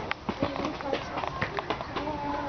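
Children's voices in short, broken fragments, mixed with a string of sharp taps and clicks.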